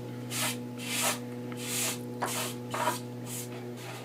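Repeated short scratchy rubbing strokes, about seven in four seconds, over a low steady hum.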